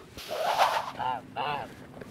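A man laughing: a breathy laugh, then two short voiced "ha"s about a second in.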